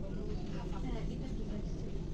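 Restaurant dining-room ambience: indistinct murmur of voices over a steady low rumble.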